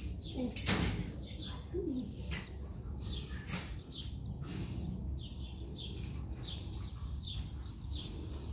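A small bird chirping over and over, short falling chirps roughly twice a second, with a couple of brief rustling noises about a second in and midway.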